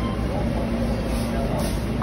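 Steady hum of background store noise with faint voices, and a short electronic beep from the copier's touchscreen at the very end as a button is pressed.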